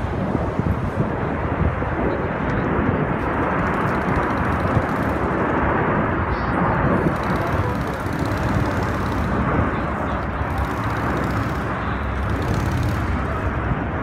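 Blue Angels jets flying low in formation overhead, a steady rushing roar that swells a little in the middle.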